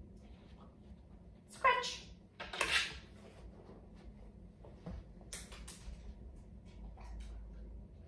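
A brief voice-like call about a second and a half in, then a short rasping scrape and, a few seconds later, a run of quick sharp scratches: a dog's claws striking and dragging on a handheld board.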